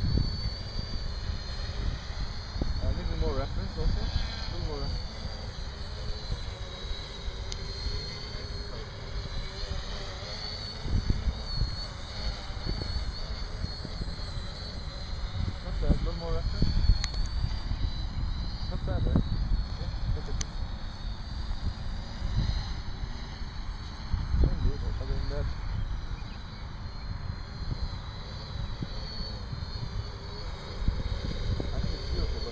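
Small electric quadrotor's motors and propellers whining overhead as it hovers under autonomous altitude hold, the pitch wavering as the motor speeds shift. Wind gusts buffet the microphone throughout.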